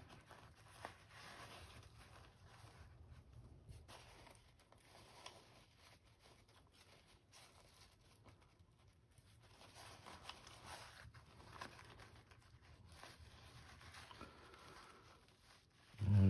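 Near silence, with faint rustles and a few light taps from a wooden embroidery hoop with netting and paper towels being handled on a cloth-covered bench.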